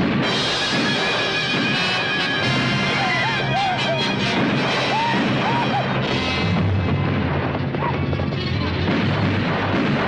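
Film battle soundtrack of a western: an orchestral score plays over rifle fire and crashes, with a cluster of sharp shots about three seconds in.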